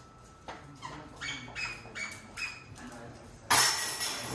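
A disc golf putter hitting the chains of an indoor basket about three and a half seconds in: a sudden, loud metallic chain jingle that rings on. Before it, several short, quieter sounds come about every half second.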